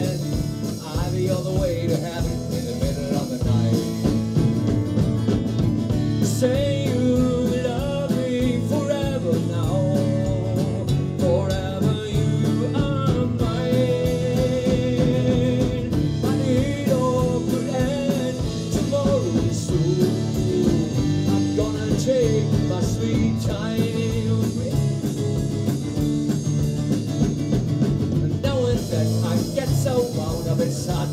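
Live band playing a steady rock song on acoustic guitar, bass guitar and drum kit, with a wavering melodic lead line on top.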